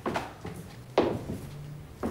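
Two dull knocks about a second apart, each with a short ringing tail, like a door or heavy object bumping in a bare room.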